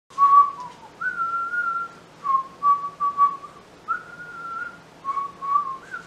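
A man whistling a tune in single clear notes: runs of short lower notes alternating with two longer, higher notes held for about a second each.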